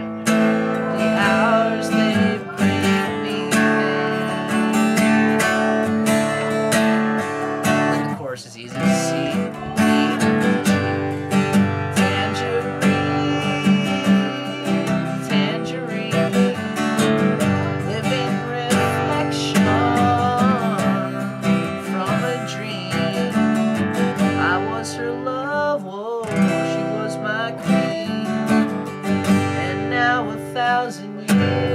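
Steel-string Takamine acoustic guitar strummed in steady chords, with a short break about eight seconds in. A man's voice sings along over the guitar, most clearly in the second half.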